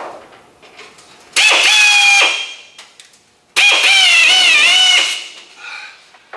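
Handheld air drill whining in two short runs as it drives self-drilling tech screws through overlapping sheet-metal floor panels. The second run is longer and its pitch sags under load.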